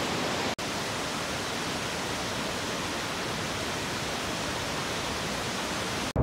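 Cameron Falls, a waterfall, rushing with a steady, even roar of falling water, briefly cut off for an instant about half a second in.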